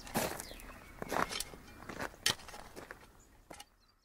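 A string of soft, irregular taps and scuffs, a sound effect that thins out and stops about three and a half seconds in.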